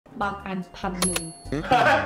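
A cash-register 'ka-ching' sound effect about a second in: two sharp clicks and a high bell ring that fades within about half a second, laid over a woman's speech about a price.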